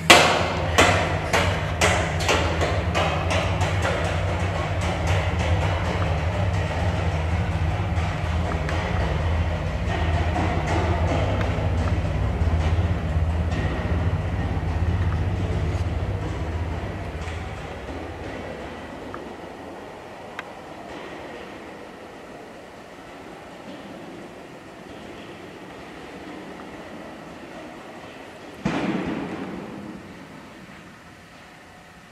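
A small plastic cat ball thrown down a long concrete tunnel: it hits the floor hard, bounces with quicker and quicker clicks, then rolls away with a long echoing rumble that fades out over about fifteen seconds.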